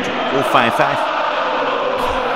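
Steady noise of a large football stadium crowd, with fans chanting, under a man's brief remark.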